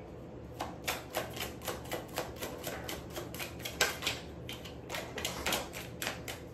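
A tarot deck shuffled by hand: a quick, irregular run of card clicks and snaps, about three or four a second.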